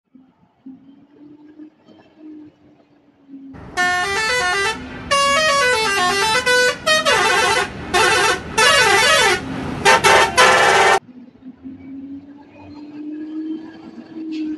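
Musical multi-tone horn of a Pakistani Hino truck playing a tune of stepping, rising and falling notes in several loud blasts, starting a few seconds in and cutting off sharply near the end. Under it runs the truck's low, steady engine hum.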